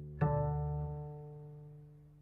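Upright double bass plucked pizzicato: a low note fading out, then about a fifth of a second in a second note an octave higher, which rings and slowly dies away. The two notes together demonstrate an octave.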